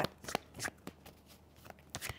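Tarot deck shuffled by hand: a few soft, short clicks of cards slipping against one another, most of them in the first second.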